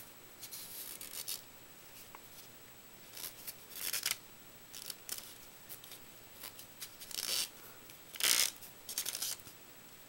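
Paper rustling and crinkling in several short bursts as a strip of paper is wrapped around a rolled-paper tube, the loudest burst near the end.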